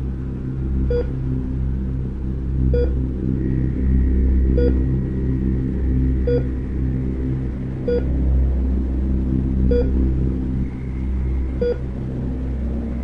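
Heart-monitor beep sound effect: a short, single-pitched beep repeating slowly and evenly, about once every two seconds, over a loud, steady low rumbling drone.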